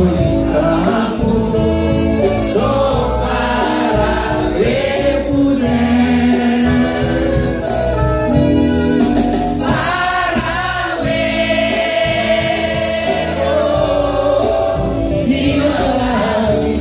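Live band music with several voices singing together.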